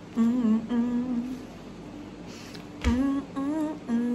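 A woman humming a short tune in two phrases, with a brief low thump as the second phrase begins.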